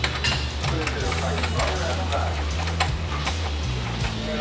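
Background music with a low, held bass line and light ticking percussion.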